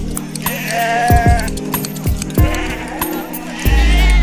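Sheep bleating over background music: a wavering call from about half a second in, with further bleats near the end, above a steady low drone and repeated low strokes.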